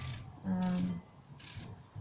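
A woman's drawn-out hesitation sound, held on one pitch for about half a second in a pause of her sentence, between two brief noisy handling sounds, the second about one and a half seconds in.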